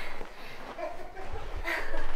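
A woman laughing softly and breathing, with a louder breathy laugh near the end: relieved laughter at being able to breathe again.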